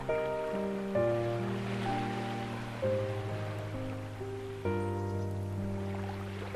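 Slow ambient piano playing soft, sustained chords and single notes over low bass tones, with ocean waves washing in the background. The wash swells about two seconds in and again near the end.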